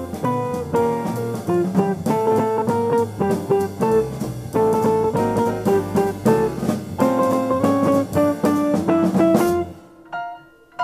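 Live small-group jazz: an archtop electric guitar plays a run of single-note lines over upright bass and a drum kit. The band drops away sharply near the end.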